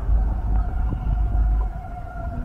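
Wind buffeting the microphone in a steady low rumble, with a faint held tone in the background.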